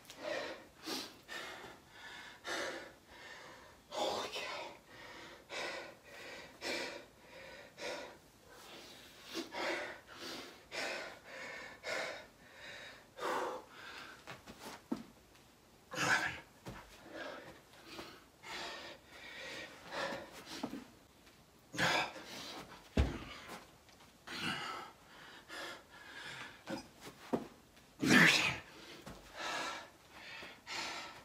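A man breathing hard and fast from the exertion of non-stop burpees, a forceful breath about once a second, with louder gasping breaths a little past halfway, at about three quarters through and near the end. A single low thump comes a little after two thirds of the way through.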